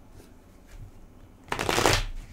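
Tarot cards being shuffled by hand: a few faint card taps, then a loud burst of shuffling about half a second long near the end.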